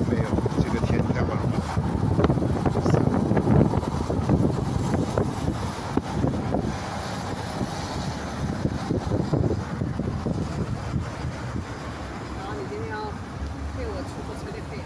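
Wind buffeting the microphone: a low, irregular rumble in gusts, stronger in the first half and easing off later.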